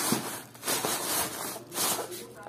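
Clear plastic bag crinkling and rustling against the inside of a cardboard box as a hand handles it, in uneven bursts, loudest at the start and again near the end.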